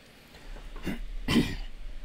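A man coughing twice, the second cough louder.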